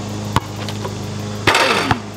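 Background music with a steady beat, a single sharp click about a third of a second in, and a louder, harsh burst of noise for the last half second.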